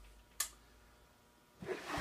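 A quiet pause broken by a single short, sharp click about half a second in.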